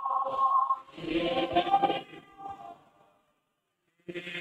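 A standing group of people singing a hymn together, the voices in phrases, pausing briefly near the end before the next line.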